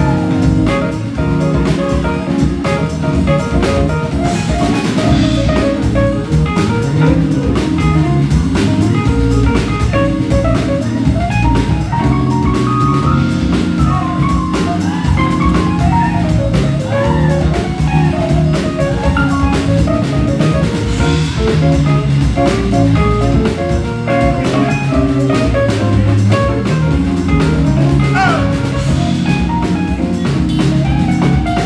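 Live funk-soul band playing an instrumental groove on drum kit, electric bass and funky keyboards, steady throughout.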